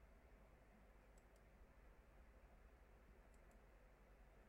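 Near silence with a low room hum, broken by two pairs of faint computer mouse clicks, about a second in and again past three seconds.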